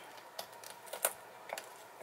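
A few faint, light clicks and taps, about four, the loudest about halfway through, from hands handling a raw duck and a sharp knife at the wing.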